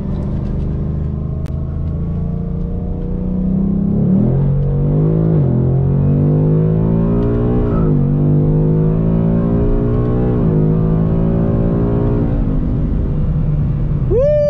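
Ford Mustang engine and stock exhaust at wide-open throttle in drag strip mode, heard inside the cabin. After a few seconds of steady running, the revs climb and drop sharply at each of several quick upshifts of the 10R80 ten-speed automatic, with a brief tire chirp on one shift.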